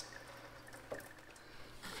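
Faint trickle and drip of gasoline draining from a disconnected fuel line and fuel filter, with a light click about a second in.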